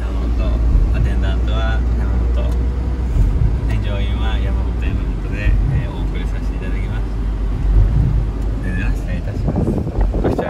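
Mazda Bongo van heard from inside the cab while driving: a steady low rumble of engine and road noise, with a faint voice now and then.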